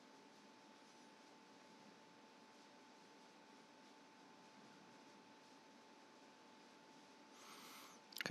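Near silence: faint steady room-tone hiss with a thin steady hum, and a brief faint noise just before the end.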